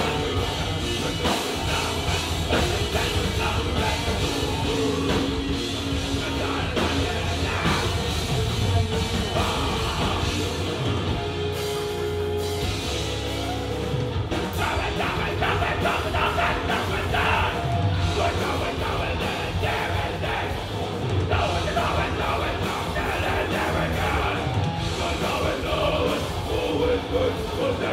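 Live rock band playing loud, dense music with electric guitars, bass and drum kit, with singing.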